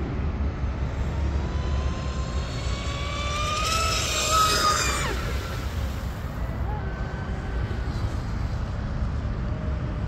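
RC speedboat's RocketRC 4092 1520kV brushless motor and propeller whining at speed on 8S. The whine rises in pitch and loudness to a peak about four to five seconds in, then drops off sharply and fades. Wind rumbles on the microphone throughout.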